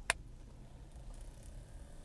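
A single sharp click as a small plug-in phone fan's Lightning connector is pushed into an iPhone, followed by a faint low background hum.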